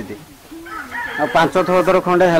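A rooster crowing: one drawn-out crow that begins about half a second in, with its last long note falling in pitch.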